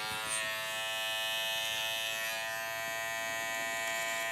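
Wahl electric hair clipper running with a steady buzz while cutting short hair at the back of the head.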